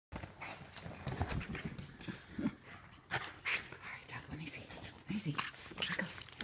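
A French bulldog puppy and a chug playing tug-of-war with a toy: irregular short dog vocal noises and scuffling.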